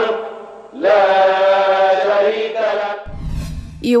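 News-bulletin transition music: two long held, chant-like tones, the second coming in about a second in with a short upward slide, then a rising whoosh over a low rumble near the end.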